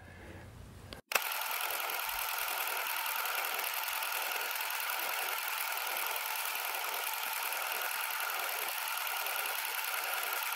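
Old film projector sound effect: a steady, thin mechanical whirr with hiss that starts abruptly about a second in.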